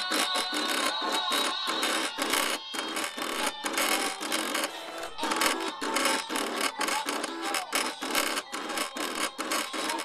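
Cricut cutting machine drawing with a pen: its carriage and roller motors whir in rapid, short stop-start runs as the pen head traces lines across the paper.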